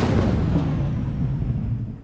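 Thunder sound effect: a loud low rumble that fades away over about two seconds.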